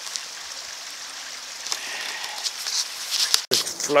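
Steady rushing hiss of a fast-flowing, flood-swollen river, with a few faint scattered clicks. It is cut off abruptly near the end, and a man's voice follows.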